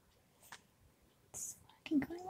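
A woman's soft whispered, breathy vocal sound near the end, after a short hiss, with a faint tap about half a second in.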